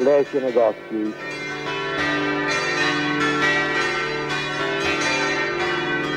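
Church bells pealing: many bells ringing together in a continuous, overlapping wash of tones, starting about a second in.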